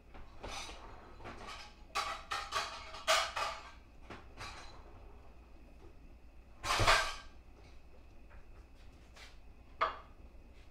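Dishes and kitchen utensils clattering as they are handled and set down: a run of sharp clinks about two seconds in, a louder knock near seven seconds, and one last click near the end.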